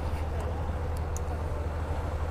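Motorcycle engine idling at a standstill, a steady low even sound, with light street traffic around it.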